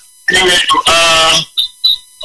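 A man's voice speaking over a phone call line, then two short high-pitched beeps about a second and a half in.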